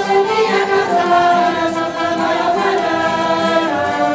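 Live band of saxophones, trumpets and guitars playing a bailinho number, with a group of voices singing along in held notes.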